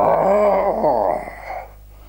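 A man imitating an animal cry with his voice: one drawn-out call with a wavering pitch, about a second and a half long.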